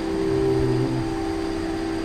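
A steady musical drone of held notes, the kind that accompanies devotional chanting, with a lower note sounding briefly about half a second in.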